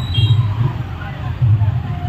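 Street noise of a slow procession of motor scooters and small vans passing, with voices mixed in and a low thudding beat that pulses about once a second.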